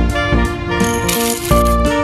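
Rock sugar crystals poured into a Vitamix blender's plastic jar, clattering for about half a second to a second near the middle, over background music.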